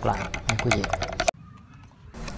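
A wooden chopstick stirring a soapy water-and-oil mix in a plastic bottle, clicking rapidly against the inside. The clicking stops suddenly about a second and a quarter in.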